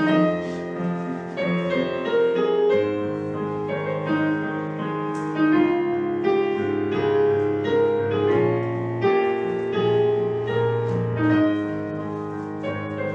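Slow piano music: a melody over sustained chords and held bass notes.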